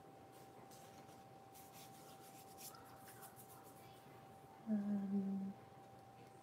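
A woman's short closed-mouth hum, under a second long near the end, stepping down slightly in pitch. Faint light rustling and a faint steady high whine run beneath it.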